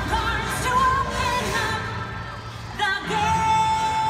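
Show-tune music with a woman singing over an orchestral backing; about three seconds in she begins one long held high note.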